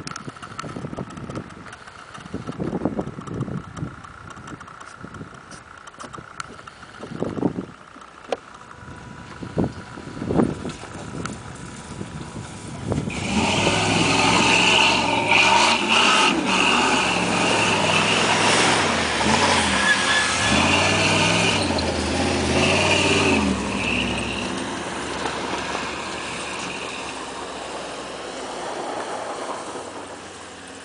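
Buffeting wind on the microphone with faint distant vehicles at first; nearly halfway in, a Dodge Ram pickup's engine revs hard close by, its wheels spinning through dry grass. The engine noise rises and falls for about ten seconds, then dies down over the last several seconds.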